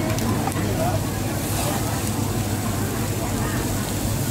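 Raw meat and fish sizzling on a paper-lined tabletop barbecue grill, over a steady low hum and faint background chatter.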